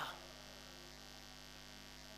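Steady low electrical mains hum, faint, with the last syllable of a man's voice dying away at the very start.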